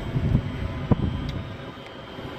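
Low, uneven wind rumble on the microphone with handling noise, and one sharp click about a second in.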